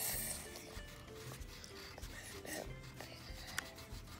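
Wax crayon rubbing back and forth on paper, heaviest near the start, over quiet background music of short held notes.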